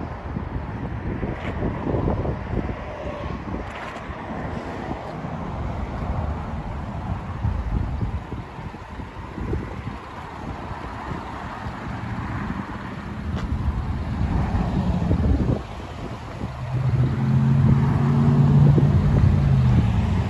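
Wind buffeting the phone's microphone, a low rumble that rises and falls. Near the end a steady low hum joins in.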